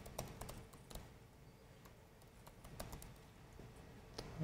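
Faint typing on a computer keyboard: a quick run of key clicks in the first second, then a few scattered clicks later on.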